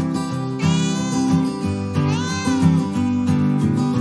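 A cat meowing twice, about a second and a half apart, each meow under a second long, the second one rising and falling in pitch, over background music.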